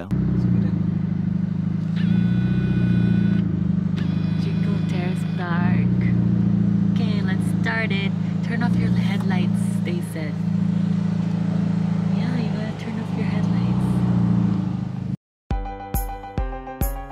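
Car on the move heard from inside the cabin: a steady low engine and road hum, with faint music and indistinct voices over it. The sound cuts off abruptly shortly before the end.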